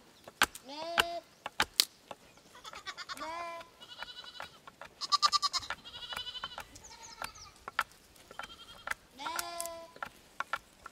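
A flock of sheep bleating over and over, some calls low and some high-pitched, from several animals. Sharp wooden knocks come in between as firewood is split and pried apart.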